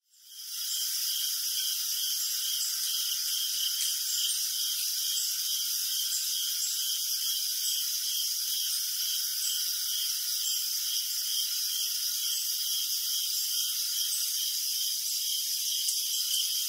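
Evening chorus of insects: a steady high-pitched trill, under it a pulsing call that repeats about twice a second, and scattered short chirps. It fades in just at the start.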